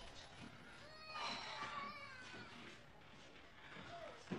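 Faint, high-pitched crying: a few short, wavering whimpers between about one and two seconds in.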